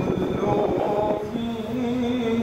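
A slow melody of long held notes comes in about half a second in and steps lower about a second later, over the murmur of a crowd.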